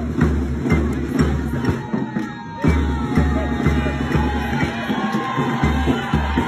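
Music with a heavy bass beat about twice a second, which drops out briefly a little after two seconds in, then picks up again.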